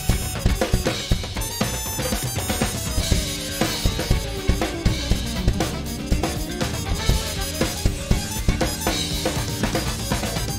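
Acoustic drum kit played in a busy funk groove, with kick, snare and cymbals hitting many times a second, over a funk recording with pitched instruments underneath.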